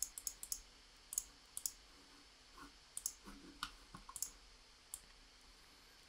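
Computer mouse clicking: a quick run of clicks at the start, then single clicks spread out every half second or so until about five seconds in.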